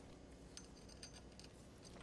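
Near silence with a few faint metallic clinks about half a second to a second in, from a steel roller chain being worked onto its sprockets.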